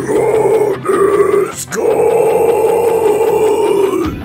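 Section of a pop-punk/metalcore song in which a singer holds three long notes, the last about two seconds, with little drumming under them.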